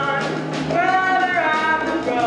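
A young male voice singing a show tune, holding and bending notes, over instrumental accompaniment with a steady bass line.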